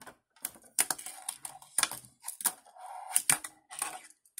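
A fingerboard (finger skateboard) being popped and landed on a wooden tabletop: a quick, irregular series of sharp clacks and taps as the tail snaps down and the wheels hit the wood.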